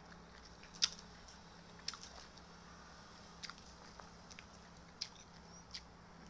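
Someone chewing food with the mouth close to the microphone: faint mouth sounds with about half a dozen short, sharp clicks and smacks scattered through, over a faint steady hum.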